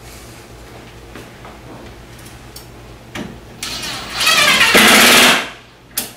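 Cordless drill driving a screw through a metal drawer slide into the cabinet wall, fastening the slide at its set-screw hole. The motor runs loud for about two seconds in the second half, then stops.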